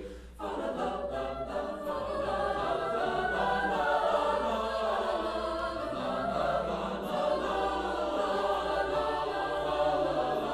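Mixed-voice a cappella choir singing a Renaissance madrigal in several parts, the voice lines moving against one another. A short break between phrases just after the start, then the singing carries on.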